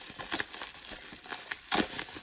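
Plastic bubble wrap crinkling and crackling as it is handled, in irregular rustles with the sharpest crackle near the end.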